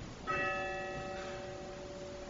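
A bell struck once, about a quarter second in; its several tones ring on and fade, the higher ones dying away first.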